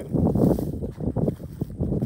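Wind buffeting the microphone outdoors: an uneven low rumble that surges and drops in short gusts, heaviest in the first half.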